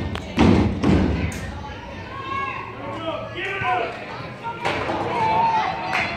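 A few heavy, low thumps in the first second, then voices of people talking nearby.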